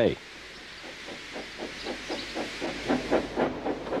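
Steam tank engine pulling away: a hiss of escaping steam with a run of quick, even chuffs that grow steadily louder.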